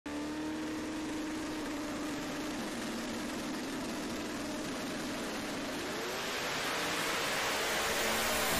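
Two drag-racing cars' engines at the starting line, holding a steady pitch while staged, then wavering and rising in pitch as the cars launch, growing louder near the end.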